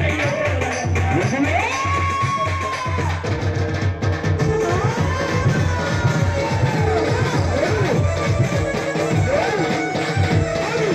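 Folk music with a steady, pulsing drum beat and long held notes that rise, hold and fall away, the clearest about two seconds and six seconds in.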